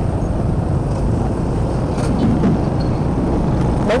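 A motorbike riding along a city street, heard from the rider's own bike: a steady low rumble of engine and road noise.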